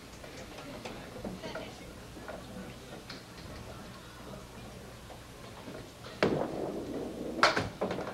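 Candlepin bowling-alley ambience: a low hum of the hall with faint scattered clicks. Near the end, a louder rumble starts, followed by a couple of sharp knocks as the small candlepin ball is delivered onto the lane.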